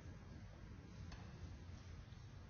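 Near silence: low room hum with one faint click about a second in.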